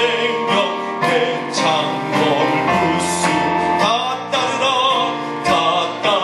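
A man singing a gospel song in a strong, operatic voice with vibrato into a microphone, over instrumental accompaniment.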